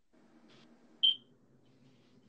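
A single short, high-pitched beep about a second in, over a faint low room hum.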